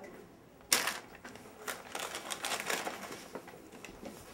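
A folded sheet of paper being handled: one sharp crackle about three-quarters of a second in, then a run of small rustles and crinkles.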